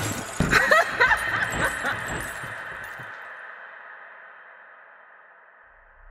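A car windscreen shattering in a crash: broken glass clattering and tinkling in the first few seconds. A steady ringing tone is left behind and fades away slowly.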